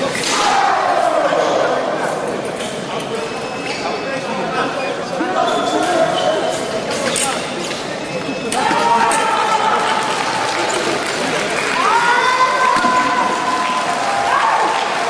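Foil bout on a piste in a large echoing hall: thuds of footwork and sharp clicks, with short squeaky tones over a background of voices.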